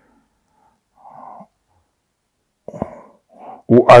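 A pause in a man's speech: a faint breath about a second in, then mouth clicks and a short intake of breath close to a clip-on microphone. His speech resumes near the end.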